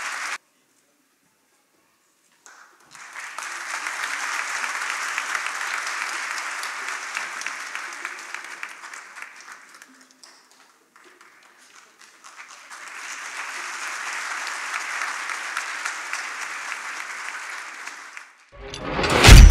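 Audience applause in two spells of several seconds each, fading in and out, with a short quiet gap between them.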